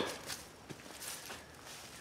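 Faint footsteps and light rustling on dry leaf litter, with a few soft scattered ticks.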